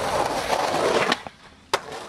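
Skateboard wheels rolling over rough asphalt, a steady grinding rumble that cuts off a little past halfway, followed by a single sharp clack of the board near the end.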